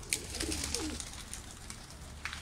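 Domestic pigeons cooing softly in a loft, a low wavering coo in the first second, with a few light clicks.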